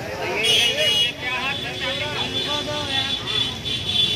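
Several people talking over street traffic noise, with a brief, louder high-pitched sound about half a second in.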